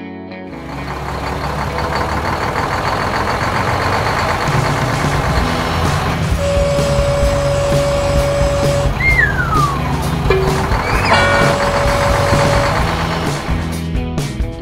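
Cartoon truck sound effects: a steady engine rumble while the tipping bed lifts and the crate slides off. About six seconds in a steady high tone holds for a couple of seconds, followed by a falling whistle-like glide and then a second steady tone.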